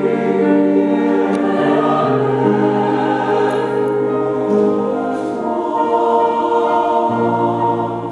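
Mixed choir singing a slow piece in several parts, holding long chords that shift every couple of seconds.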